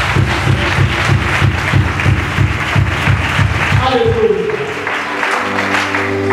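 Church worship music with a quick, steady low drum beat and rhythmic noise that fits clapping for about four seconds. It then gives way to a held low keyboard note under a voice near the end.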